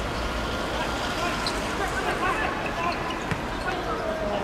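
Distant players' voices calling out across an outdoor football pitch over a steady background noise, with one sharp thump a little after three seconds in.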